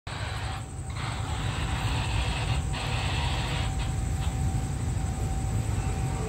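Steady low rumble of a distant diesel train approaching the station. A steady high hiss runs over it and drops out briefly twice.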